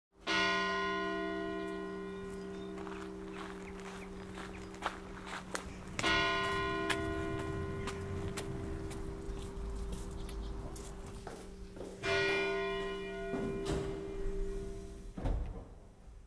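A church bell struck three times, about six seconds apart, each stroke ringing on with many overtones and slowly fading. A few faint knocks sound between the strokes.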